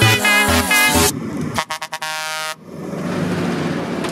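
New Holland T7 230 tractor sounding its horn: a few short toots, then one steady blast of under a second. A rising rush of engine and tyre noise follows as the tractor and its loaded grain trailer pass close by.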